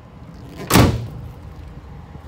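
Pickup truck tailgate slammed shut: one heavy bang about three-quarters of a second in.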